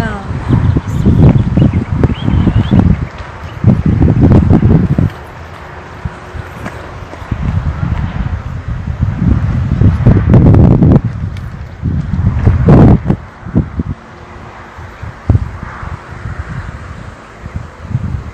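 Wind buffeting the microphone in irregular gusts, heavy and low in pitch, with faint voices of people close by.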